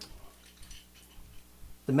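Faint scattered clicks and knocks as an AR-15 rifle with polymer furniture is lifted and turned in the hands. A man's voice starts near the end.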